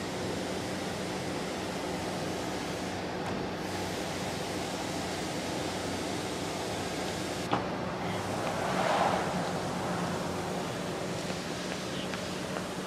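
Steady outdoor background noise, an even hiss with a faint low hum under it, and a single short click about seven and a half seconds in.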